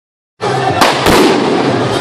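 Firecrackers going off in a dense, rapid crackle that starts abruptly about half a second in, with two louder bangs around one second in.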